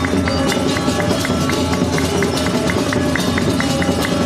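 Balinese gamelan ensemble playing Baris accompaniment: bronze metallophones struck in quick runs of ringing notes over kendang drums, dense and steady throughout.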